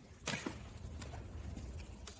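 A short rustle as the stroller harness strap and seat fabric are handled, about a quarter second in, over a low steady hum.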